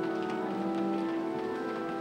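Pipe organ playing slow, sustained chords that change about every second.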